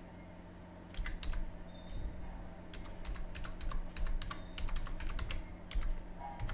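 Computer keyboard being typed on, a quick run of key clicks starting about a second in as a word is typed out, over a faint steady hum.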